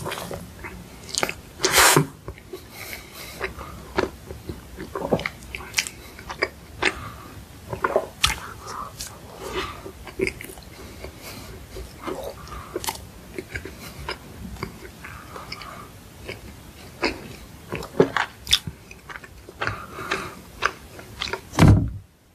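Close-miked chewing of soft cream-filled bread, with many small mouth clicks, and a dull thump just before the end.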